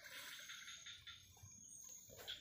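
Near silence: faint forest ambience with a steady, high-pitched insect drone.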